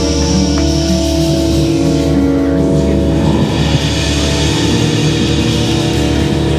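Live band playing an instrumental passage of the song between sung verses, with long held notes over a steady bass.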